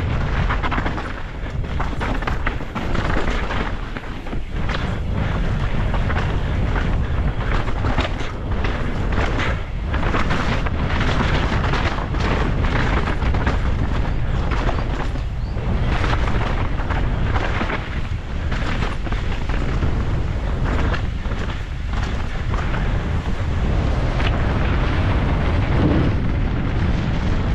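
Downhill mountain bike ridden fast over a dirt trail: wind buffeting the helmet camera's microphone with a heavy rumble, and tyres and frame clattering over ruts and roots in frequent knocks.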